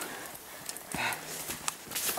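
A few scattered knocks and scuffs of hikers' footsteps and gear on a steep dirt trail, the loudest about halfway through.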